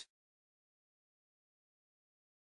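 Near silence: a digitally silent gap between spoken vocabulary words.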